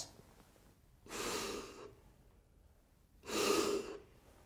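Two mouth-to-mouth rescue breaths blown into a CPR training manikin, each just under a second long and about two seconds apart.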